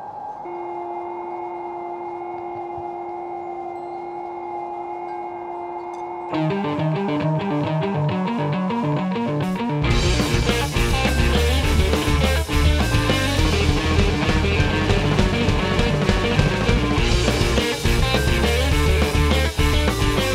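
A live rock band opens a song. It starts with a few held tones; about six seconds in, a quick repeating riff of notes joins, and about ten seconds in, the drum kit and bass come in and the full band plays loudly.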